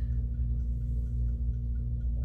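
Steady low hum of room and recording background noise, with no speech.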